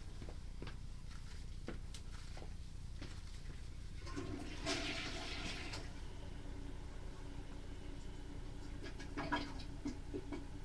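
Water rushing through the house drain plumbing, as from a toilet being flushed: a two-second surge about four seconds in, with a held tone under it, and a shorter surge near the end. A steady low hum and scattered light clicks run underneath.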